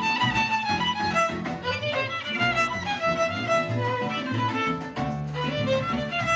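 A youth ensemble with violins playing a piece, the violins bowing a sustained melody over lower held bass notes.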